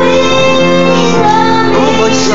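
A group of children singing a Christmas carol into handheld microphones, with instrumental accompaniment holding steady notes underneath.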